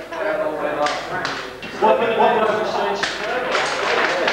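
Several people talking indistinctly in a room, with a few sharp clicks or knocks about a second in and again around three seconds in.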